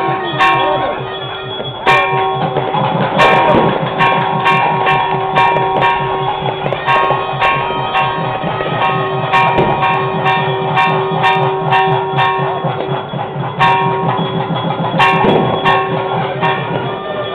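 Bells struck over and over, each strike ringing on, above a fast low beat and a steady held tone.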